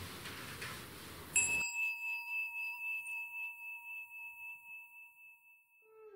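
A bell struck once, about a second and a half in, its clear ringing tone slowly fading away over some four seconds.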